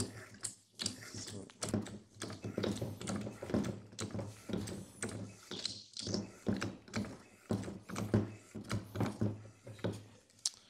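Parker hydraulic hand pump worked stroke after stroke by its lever, driving a KarryKrimp crimper down to crimp a fitting onto a hydraulic hose: a steady series of mechanical clicks and knocks from the pump and lever.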